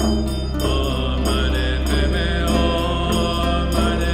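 Tibetan Buddhist mantra chanted in a deep voice over a steady low drone, with a handheld Tibetan drum beaten with a curved stick at an even pace.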